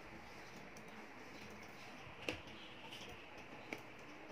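Quiet room tone with two short clicks, a sharper one a little past halfway and a fainter one near the end.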